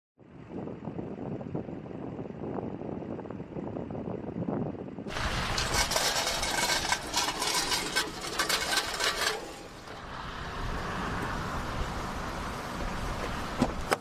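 Outdoor noise of vehicles and wind, changing abruptly about five and ten seconds in. The middle part is louder and rougher, with many crackles.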